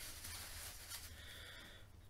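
Quiet room tone with a low steady hum and a faint hiss; no distinct handling sounds stand out.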